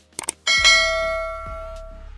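Subscribe-button animation sound effect: a couple of quick mouse clicks, then a bright notification bell ding about half a second in that rings on and fades away over a second and a half.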